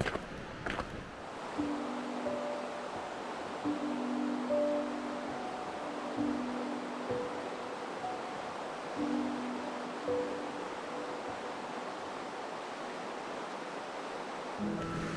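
Soft background music of slow, held notes in short phrases over a steady rushing of river water.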